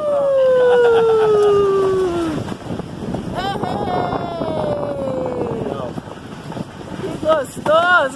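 Two long cries of excitement, each falling in pitch, from a rider in a wicker basket toboggan, over a steady scraping rumble of its wooden runners sliding down a steep paved street, with wind on the microphone. Short exclamations come near the end.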